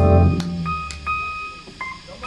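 Live blues band ending on a loud chord with bass and drums that rings out and fades over about a second, followed by a few sparse, held electric guitar notes.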